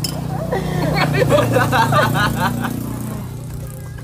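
Indistinct voices talking over a steady low motor-vehicle engine hum that grows louder and then fades away.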